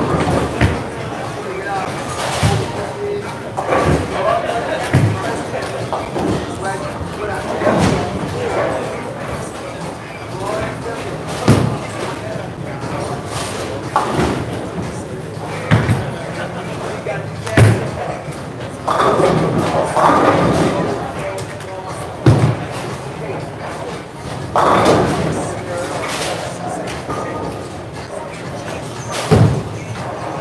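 Bowling alley sounds: bowling balls knocking onto lanes and crashing into pins, a loud knock every couple of seconds, over the chatter of people in a large hall.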